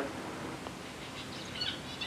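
A pause in a recorded phone call: steady background hiss, with a few faint, short high chirps about one and a half seconds in.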